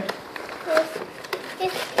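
Small cardboard box being pulled open by hand: a few light clicks and scrapes of the flaps, under brief quiet speech.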